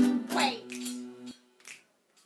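Acoustic guitar chord ringing under finger snaps about twice a second. The guitar is cut off about a second and a half in, and a couple of quieter snaps follow.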